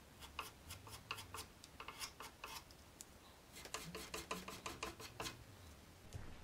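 Putty knife scraping wood filler over screw holes in a pine bookcase side: quiet, short rasping strokes in two runs of a couple of seconds each.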